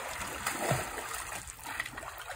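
Water splashing as a swimmer tumbles through a flip turn in an endless pool swim spa, the splashes strongest about half a second in, over the steady rush of the pool's water current.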